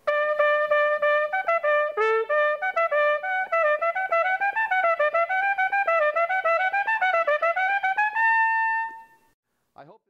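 Solo trumpet playing a phrase: a held note, then a run of quick tongued notes moving up and down, ending on a long held higher note that stops about a second before the end.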